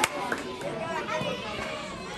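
Many children's voices talking and chattering over one another.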